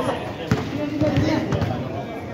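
A basketball bouncing on a concrete court as a player dribbles, with sharp knocks, the strongest about a quarter of the way in, under players' and spectators' voices.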